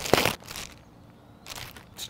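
White plastic poly mailer crinkling and tearing as it is pulled open by hand, a short burst of rustling in the first half second.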